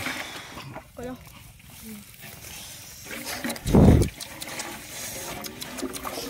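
Faint voices, then about four seconds in a short, loud burst of low rumbling noise lasting under half a second, like wind or breath buffeting the microphone.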